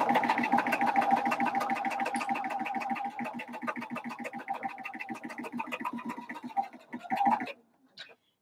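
Electric home sewing machine stitching a straight seam along the open edge of a folded fabric strip: a motor hum with rapid, evenly spaced needle strokes, growing quieter and stopping about seven and a half seconds in.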